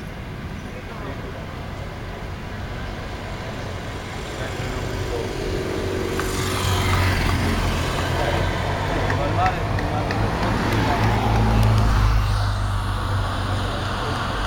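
A police escort motorcycle and a Skoda estate team car passing close by. Their engine and tyre noise builds to a peak, then drops off about twelve seconds in.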